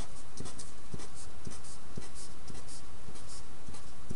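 Pen writing: a run of short, light strokes over a steady background hiss.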